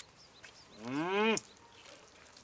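A single drawn-out voiced call, about half a second long, that rises and then drops sharply in pitch, a little under a second in.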